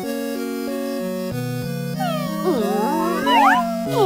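Bouncy children's-song instrumental music, with several high kitten meows overlapping it from about halfway in, the loudest near the end.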